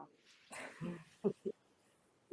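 A few faint, short murmured vocal sounds from a person's voice, low and indistinct, between about half a second and a second and a half in.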